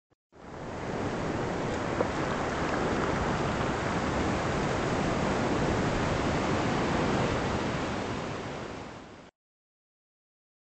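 Steady rushing wash of ocean surf, used as an intro sound effect: it fades in, holds evenly, tapers and then cuts off suddenly near the end, with a faint tick about two seconds in.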